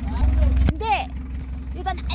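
Engine of a small old utility truck running at a steady idle, with a single knock about two-thirds of a second in and brief bits of voice.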